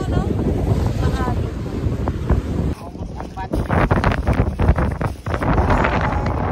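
Strong wind buffeting the microphone, with surf breaking on the rocks of the shore. About three seconds in the sound changes abruptly to a closer crackling rustle.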